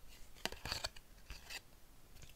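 Cardboard football trading cards sliding and rubbing against one another as they are shuffled through by hand, with a few light ticks as card edges catch.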